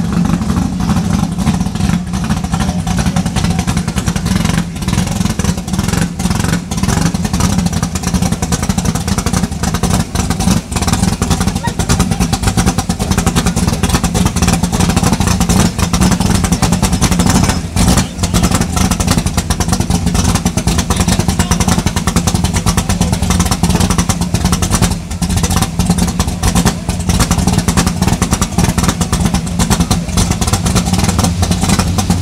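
Grudge-race G-body drag car's engine idling steadily, a loud, even running sound with no big revs, with spectators' voices around it.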